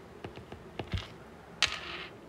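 Stylus tips tapping and clicking on a tablet's glass screen while writing by hand: a handful of light, irregular clicks.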